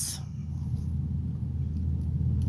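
Steady low background rumble with no other distinct sounds.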